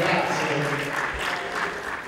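Audience applauding, with a voice talking over the clapping.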